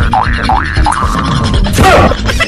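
Cartoon boing sound effects over background music: about four quick springy rising glides in the first second, then a louder falling swoop near the end.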